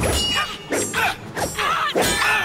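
Metallic clangs of a fight sound effect: a sharp ringing strike at the start, followed by several more quick metal hits.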